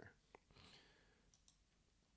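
Near silence, broken by a faint computer mouse click about a third of a second in and a second, fainter click later.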